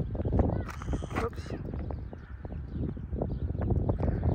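Wind buffeting a phone microphone in a low, uneven rumble, with short knocks from the phone being handled and a man's brief "oops" about a second in.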